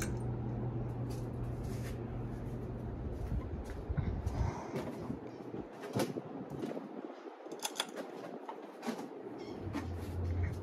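Ceiling fans running: a steady low motor hum that fades out a little after four seconds, with a few sharp clicks scattered through.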